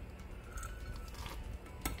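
A small stainless steel cup tapped against a stainless hop basket as a bittering charge of hop pellets is tipped in, giving one sharp metallic clink near the end, over a steady low hum.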